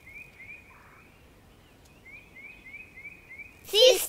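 Faint bird chirping: short rising chirps repeated about four times a second, with a pause in the middle. Children's voices come in loudly just before the end.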